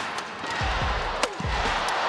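Badminton rally: a few sharp cracks of rackets striking the shuttlecock, the loudest about a second and a quarter in, over thuds of players' feet on the court and arena crowd noise.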